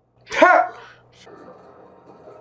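A person sneezing once, a single sharp burst about half a second in.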